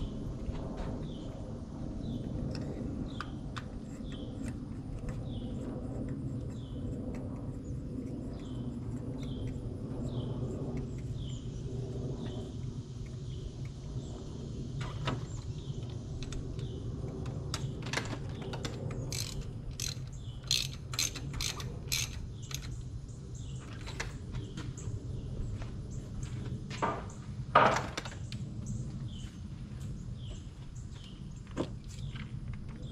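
Hand ratchet clicking and metal tools clinking in a car's engine bay during spark plug work, over a steady low hum. The sharp clicks cluster in the second half, with the loudest clunk near the end. Through the first half a bird gives a short falling chirp over and over, about once a second.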